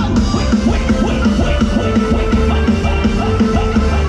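Live band playing Thai ramwong dance music through a large PA system, with a steady, even beat and heavy bass.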